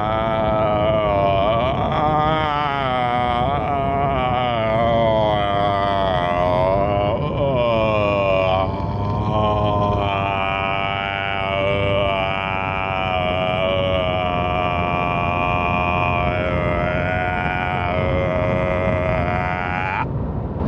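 A man's voice singing long, wordless notes that waver and glide in pitch, with almost no break, over the low hum of road noise inside a moving pickup's cabin.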